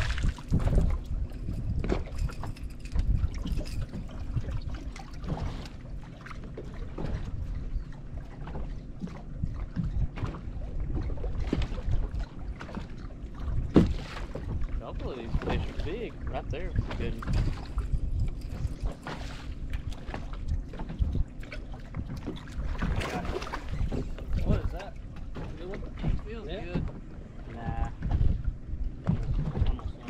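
Wind buffeting the microphone and choppy lake water lapping against a bass boat's hull, with scattered small knocks and clicks.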